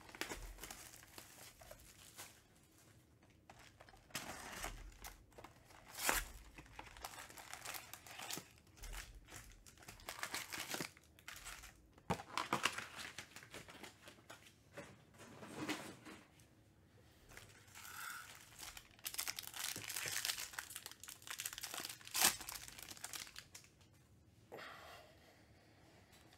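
Plastic shrink wrap crinkling and tearing as it is stripped from a sealed baseball card box, then foil card packs crinkling as they are handled and torn open, in irregular bursts.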